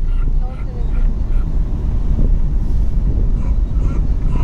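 Steady low rumble of a car's engine and road noise heard inside the cabin, with faint voices over it.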